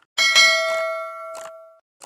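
Bell 'ding' sound effect from a subscribe-button animation: one bright metallic ring that starts right after a mouse-click sound and fades out over about a second and a half, with another click partway through.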